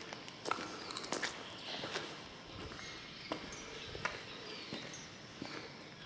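Irregular footsteps on a debris-strewn concrete floor, with a few faint high bird chirps.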